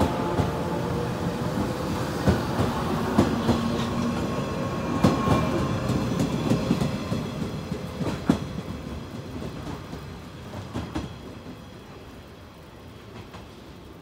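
JR 415 series 100 electric multiple unit pulling out of the station, its wheels clacking irregularly over rail joints. The running sound fades away over the last few seconds as the train recedes.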